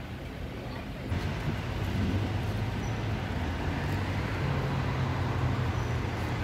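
City street traffic, with a motor vehicle's engine hum. The hum grows louder about a second in and then runs on steadily over general road noise.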